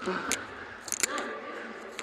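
Faint background voices with a few short, sharp clicks, one near the start and a cluster about a second in.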